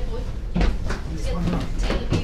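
Footsteps knocking on a wooden staircase, several steps in quick succession, with people talking in the background.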